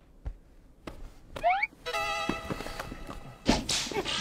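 Edited-in comic sound effects: a quick rising whistle-like glide about one and a half seconds in, then a held electronic tone lasting over a second, then a sharp hit near the end.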